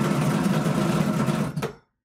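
Bubble craps machine tumbling the dice under its dome: a motor's steady hum with the dice rattling rapidly inside, cutting off suddenly near the end.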